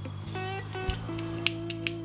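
A lighter being struck three times in quick succession, sharp clicks that fail to light because it is out of fuel. Guitar music plays steadily underneath.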